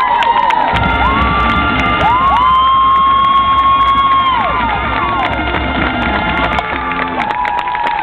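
Marching band music with a crowd in the stands cheering and whooping over it; several drawn-out whoops rise, hold and fall away.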